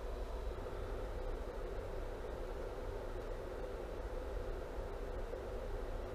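Steady low hum and hiss of running bench electronics, with no distinct events.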